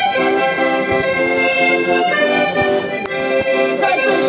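Accordion playing a carnival tune: sustained melody notes over short, regularly repeated accompaniment chords, about three to four a second.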